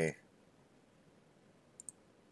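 Two quick, sharp computer-mouse clicks close together near the end, a mouse button pressed to bring up a copy menu, over quiet room tone.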